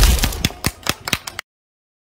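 Cartoon 'boom' explosion sound effect: a deep blast that decays into a run of sharp crackling clicks, cut off abruptly about a second and a half in.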